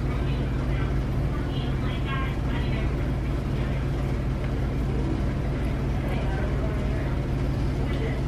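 Steady low hum with a constant noise over it, like a fan or appliance running, with faint voices in the background briefly about two seconds in.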